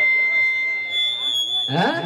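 Microphone feedback through the stage PA system: two steady high whistling tones, the lower one stopping about two-thirds of the way in. A man's amplified voice comes back on the microphone near the end.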